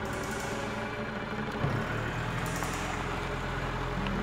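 A minivan driving past on a paved road, its engine and tyres heard under background music.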